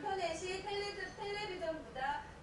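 Speech from a documentary playing over the lecture hall's loudspeakers: a woman talking in a language other than English, subtitled on screen.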